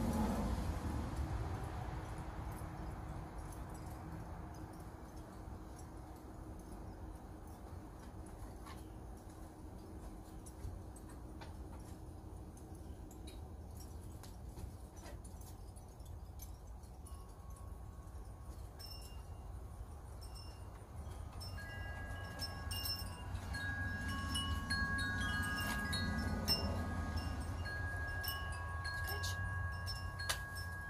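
Wind chimes ringing: several clear sustained tones overlapping, starting around the middle and growing busier toward the end. Under them runs a low steady rumble.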